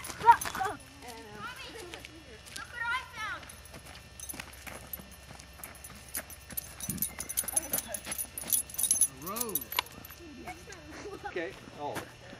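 Faint, indistinct voices talking at a distance, with scattered light clicks and scuffs.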